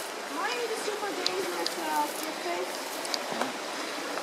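Faint, distant voices of people talking, over a steady background hiss.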